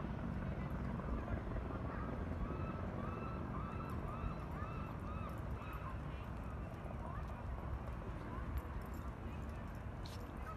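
Outdoor sound with a steady low rumble, and in the middle a run of about seven short calls, each rising then falling in pitch, about two a second.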